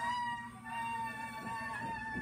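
A child's long, high-pitched wail, held in two stretches with a brief break about half a second in: a pretend cry of fright.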